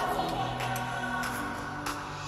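Electronic dance track intro: sustained vocal-like chords that step from note to note, with a few light percussion hits. It is mixed as 8D audio that pans around the listener.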